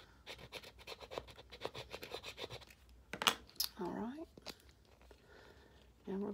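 A scraper rubbing contact paper against a plastic ornament: a quick run of short scratches for about three seconds, burnishing an eyelash decal onto the ball, then a couple of sharper clicks. A brief voice sound comes about four seconds in.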